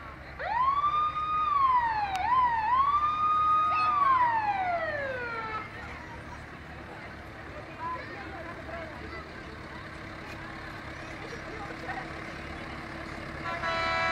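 A vehicle siren sounds one wail, loud against the background. It rises quickly, holds, dips twice, holds again, then falls away slowly over about five seconds. A short horn toot comes near the end.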